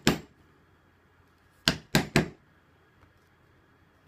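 Mallet striking an undercut beveler against leather: a group of three quick, sharp knocks about two seconds in, with the tail of another knock right at the start.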